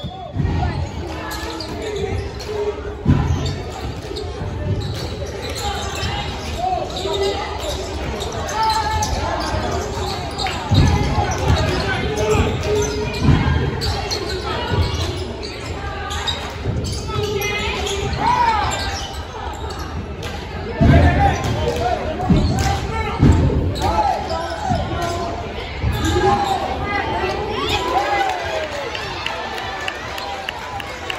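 Basketball bouncing on a hardwood gym floor: irregular dull thuds, some in quick runs, over the voices and shouts of spectators.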